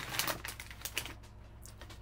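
Light clicks from a computer keyboard and mouse: a quick flurry of clicks at the start, then a few single clicks spaced out over the next second and a half.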